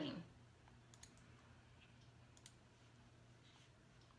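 Near silence with a few faint, scattered clicks of a computer being worked by hand, over a faint steady low hum.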